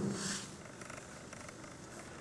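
A pause in a man's talk: his last word fades out in the first half second, then only faint steady background hiss and a low hum remain.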